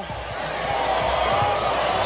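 Steady arena crowd noise, with a basketball being dribbled on the hardwood court.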